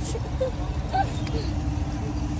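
Street-market background: a low rumble and a steady hum, with a few brief, faint voice sounds about half a second and a second in.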